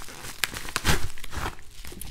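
Mail packaging being handled: padded paper envelopes and plastic wrap rustling and crinkling in a few short bursts, the strongest about a second in.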